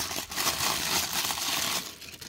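Paper wrapping crinkling and rustling in the hands as a small plastic toy figure is unwrapped; the sound keeps up steadily and stops just before the end.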